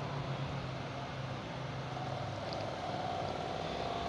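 Steady low mechanical hum, like a fan or appliance motor, over faint room noise.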